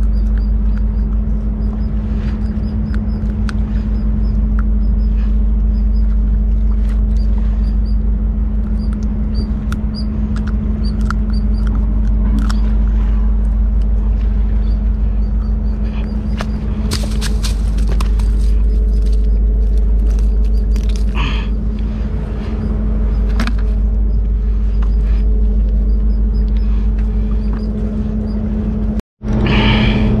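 A steady low mechanical rumble with a constant hum, like a running engine or traffic, runs throughout. Faint high chirps repeat about twice a second, with scattered small clicks.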